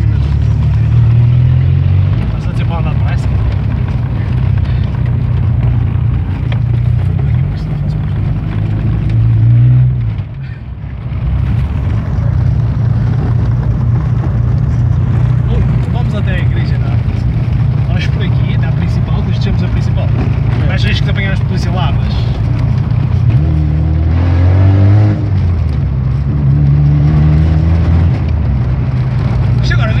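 Fiat Punto 75 ELX's 1.2-litre four-cylinder petrol engine running through an exhaust with the mufflers removed, loud inside the cabin while driving. The exhaust drone rises in pitch as the car accelerates, drops briefly just after ten seconds in as the throttle is lifted, then builds again later on.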